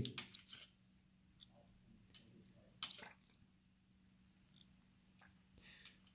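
Bridgeport mill quill feed trip mechanism clicking: a couple of light metallic clicks, then one sharp click a little before the middle as the trip lets go and the feed handle drops under gravity. A faint steady hum runs underneath.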